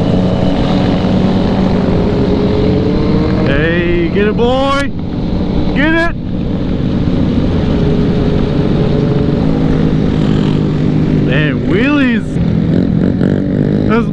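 Motorcycles running at road speed in a large group ride, a steady engine drone with wind noise, as several bikes rev up sharply about four and six seconds in and again near twelve seconds.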